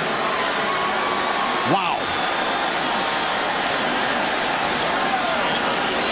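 Stadium crowd noise after a touchdown: a steady wash of many voices cheering, with one voice calling out briefly just before two seconds in.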